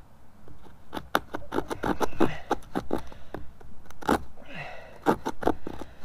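Small saw on a bushcraft knife rasping back and forth through a wooden bow-drill fireboard, cutting the ember notch. Quick short strokes, about four or five a second, start about a second in, with a brief pause midway.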